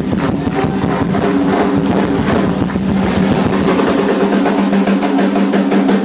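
Live rock band playing loud: a distorted electric guitar holds a sustained low note over rapid, dense drumming.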